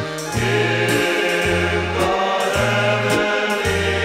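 A polka-band hymn from a Polka Mass, with voices singing together over the band and a bass line stepping between low notes about once a second.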